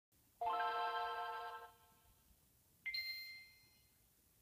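Two electronic chime notes of an intro jingle. A lower note sounds about half a second in and fades over a second or so, then a higher, brighter note comes in near the three-second mark and fades away.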